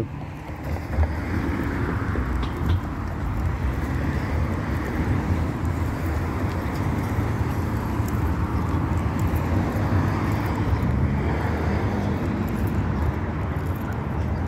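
Steady road traffic noise of cars passing on a busy street.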